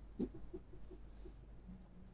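Faint desk handling sounds as a printed photo is moved into place: a click early on, then a quick run of soft little squeaks, about five a second, and a brief brush of paper.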